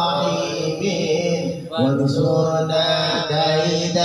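A male voice chanting sholawat, an Islamic devotional song in Arabic, amplified through a microphone, with long held melodic notes. There is a brief pause for breath a little before halfway, and then the line resumes.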